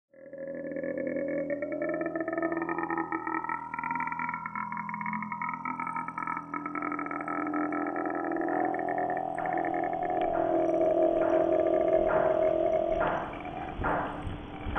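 A low, sustained droning sound that holds its pitch, gliding upward in the first few seconds, with a few knocks near the end.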